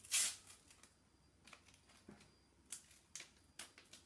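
A paper sticker packet torn open, followed by a few short, sharp crackles as the stickers inside are pulled out and handled.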